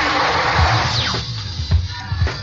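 Live go-go band music from an old show tape: drums and percussion with a dense cymbal-like wash at first, a brief falling pitch glide about halfway, then low drum hits.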